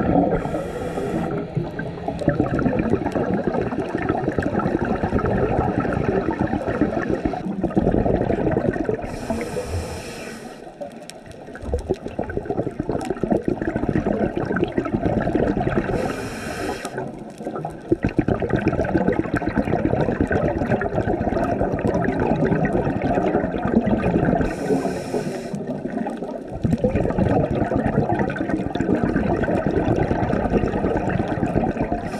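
Scuba diver breathing through an open-circuit regulator underwater: four short hissing inhalations, each followed by a long stretch of exhaled bubbles gurgling past the camera, the cycle repeating every 7 to 8 seconds.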